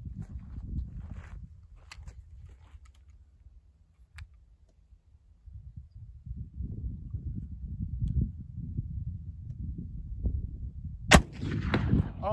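One shot from an Armi Sport replica 1863 Sharps carbine in .54 calibre, firing a loose black-powder load: a single sharp crack about 11 seconds in, after several seconds of low rumble.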